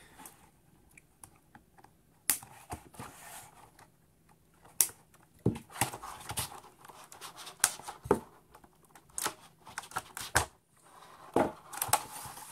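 Stiff clear-plastic blister pack crackling and clicking as it is handled and flexed, a string of sharp irregular clicks with quieter rustling between them.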